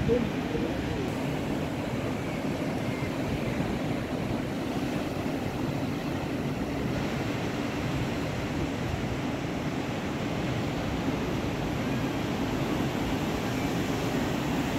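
A steady, deep rush of wind buffeting the microphone, mixed with the wash of breaking surf.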